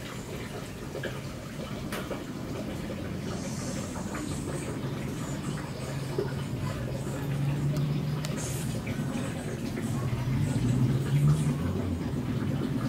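Low steady rumble of a gas stove burner under the pan, growing louder in the second half, with soft wet stirring and scraping of a spoon in raw egg on a banana leaf.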